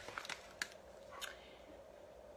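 Faint crinkling of a plastic food bag being handled, a few short crackles in the first second or so.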